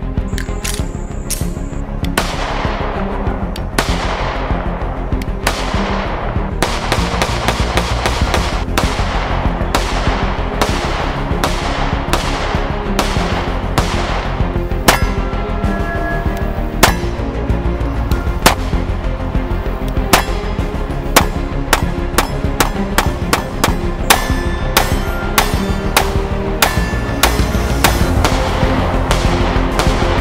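Background music overlaid with many pistol shots from a 9 mm Kimber Micro 9, a miniature 1911. The shots are spaced out at first, then come in quicker strings in the second half.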